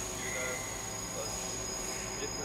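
Machine-shop background of CNC machining centers running: a steady hum with several held high-pitched whines, and a brief higher whine coming in shortly after the start.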